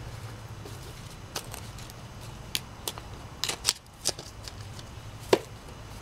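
Gloved hands scooping and scraping loose soil and wood-chip mulch in a planting hole: scattered short crackles and scrapes, bunched a little past the middle.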